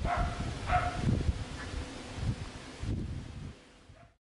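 A dog barking: two short barks in the first second and a fainter one a little later, over a low irregular rumble. The sound fades out near the end.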